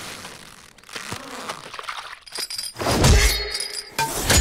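Film fight-scene sound effects: a sharp hit about a second in, a shattering, clinking stretch with ringing high tones just after two seconds, then a heavy low hit about three seconds in, the loudest sound.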